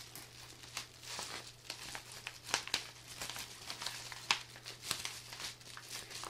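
Padded paper envelope and the foil ration pouch inside it crinkling and rustling as they are handled, in a run of scattered sharp crackles.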